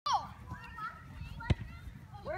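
Children calling out, with a brief falling shout at the start, and a single sharp thud of a soccer ball being kicked about one and a half seconds in.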